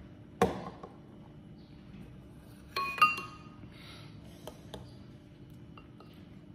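A dull knock about half a second in as a plastic cup is set down on the table. About three seconds in, a utensil strikes a ceramic bowl with a ringing double clink, the loudest sound here, followed by a few light taps.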